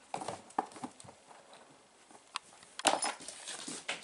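Kittens' paws and claws scrabbling and pattering on a laminate floor during rough play, with irregular light clicks and knocks; the loudest knocks come about three seconds in.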